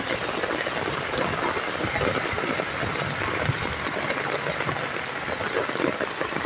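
Heavy rain falling, a dense, steady hiss.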